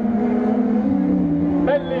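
Super 1600 rallycross cars' 1.6-litre engines running out on the circuit: several steady engine notes overlap, one stepping up in pitch about a second in as a car accelerates.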